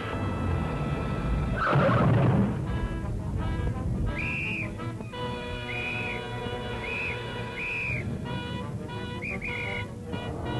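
Background music with held chords, cut by about six short, shrill police-whistle blasts in the second half. A loud burst of noise comes about two seconds in.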